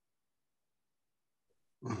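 Near silence, then near the end a person's voice begins a short murmured 'mm-hmm' of assent.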